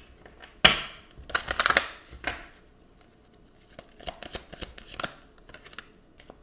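A deck of oracle cards shuffled by hand, in several quick riffling bursts in the first half, then lighter clicks and taps as cards come out of the deck onto a wooden table.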